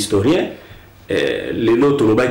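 A man speaking in an interview, with a brief pause about half a second in before he goes on talking.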